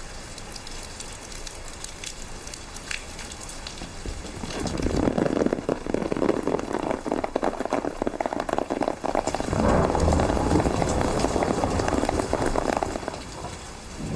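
Rain falling with a dense, crackling patter. It gets clearly louder about four seconds in and eases off near the end.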